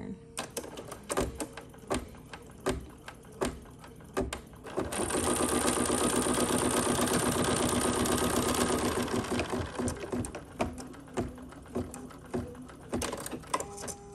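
Embroidery machine stitching a quilt block in its hoop for about five seconds, starting about five seconds in and stopping near the ten-second mark. Before and after it come scattered clicks and taps of hands handling the hooped fabric.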